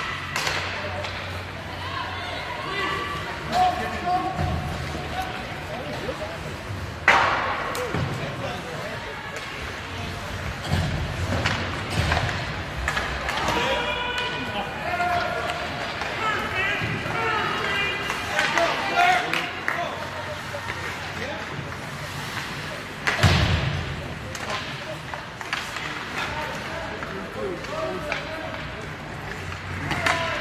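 Ice hockey game in an indoor rink: voices and shouts from players and spectators throughout, with two sharp bangs of hits against the boards, about 7 seconds and 23 seconds in.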